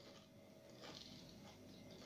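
Near silence: room tone, with a faint soft noise about a second in.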